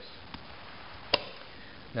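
A clear plastic storage canister knocking once, sharply, against the table as it is set down about a second in, with a faint tick before it.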